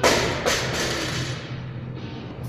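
Loaded barbell with bumper plates dropped from the top of a deadlift onto the gym floor: a loud thud at the start, a second thud about half a second later as it bounces, then fading clatter.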